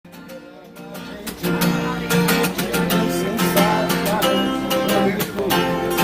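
Steel-string acoustic guitar strummed in a steady rhythm, the instrumental intro to a song. It starts softly and comes in louder about a second and a half in.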